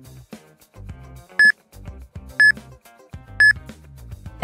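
Interval timer sounding three short, high beeps, one a second, counting down the last seconds of a rest period before the next round, over background music.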